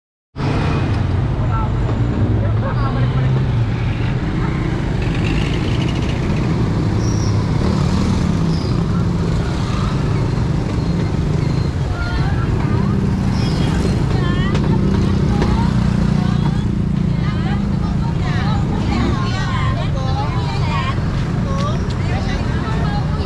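Street traffic: motorcycle and tricycle engines running with a steady low rumble, with voices of people nearby growing clearer in the second half.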